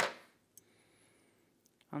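Fly-tying scissors snipping the thread's tag end at the vise: one sharp click right at the start that dies away within half a second, followed by a couple of faint clicks near the end.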